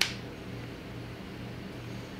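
Room tone in a speaking pause: a steady low hum with a faint hiss, the kind a fan or electrical equipment makes.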